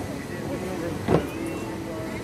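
Outdoor background ambience with faint voices and a steady low hum, broken about a second in by one brief, sharp louder sound.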